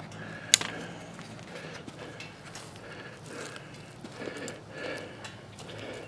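Quiet outdoor background with handling noise from a camera being carried, a sharp click about half a second in, then faint scattered ticks.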